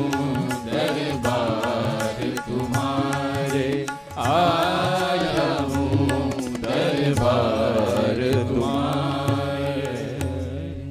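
Live Indian thumri-style devotional song: a melody in long held, gliding phrases over a steady low drone, with tabla strokes. The music dips briefly about four seconds in before the next phrase.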